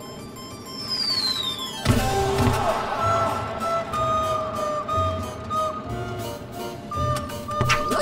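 A cartoon falling-whistle sound effect glides down in pitch, ending in a sudden thump about two seconds in. Background music with held melody notes and a steady beat then plays.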